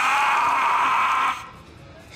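A man screaming in pain after pepper spray hits him in the face: one loud, sustained scream lasting about a second and a half that breaks off, leaving quieter sound.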